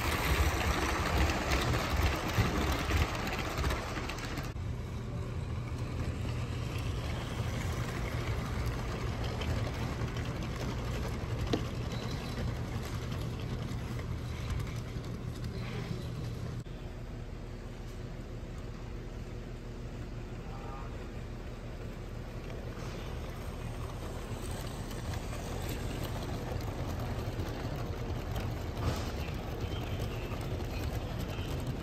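LEGO model trains running on plastic track: a steam locomotive and coaches rolling past close by with a rumble of wheels and motor for the first four seconds or so, then quieter, steady running.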